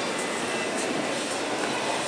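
Steady, even background noise of a shop's interior, with no single sound standing out.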